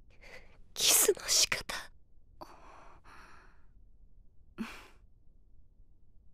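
A woman's breathy sighs and gasps, a few short breaths with the loudest about a second in.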